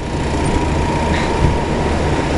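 Large rooftop cooling equipment running: a steady, loud rush of fans over a low rumble, with a constant thin whine.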